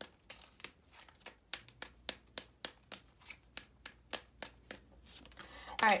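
A tarot deck being shuffled by hand: a run of light, quick card clicks, about four a second.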